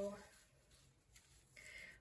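Near silence: room tone with faint handling noise as the bra and underwire are picked up, after a spoken word trails off at the start.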